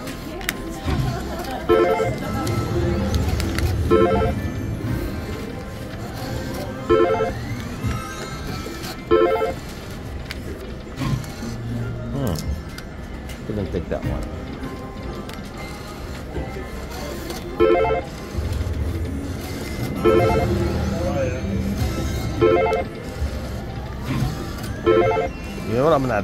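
Casino floor sound: slot machines' electronic chimes and jingles ring out every couple of seconds over background chatter and a low hum.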